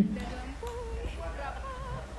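A young girl's singing voice holding wavering notes with vibrato over backing music, fairly quiet.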